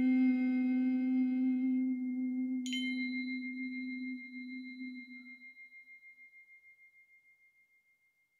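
Crotales struck with mallets, each note left to ring. A lower note struck at the start rings for about five seconds, and a brighter, higher note struck about three seconds in rings on, slowly fading to nothing.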